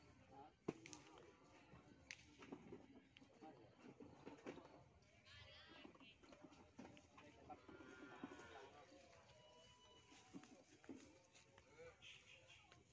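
Near silence, with a faint murmur of voices and a few soft clicks and knocks.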